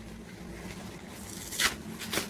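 Faint rustling of a disposable baby diaper's nonwoven layers being handled, with one brief tearing sound about one and a half seconds in as a leak barrier cuff is pulled away.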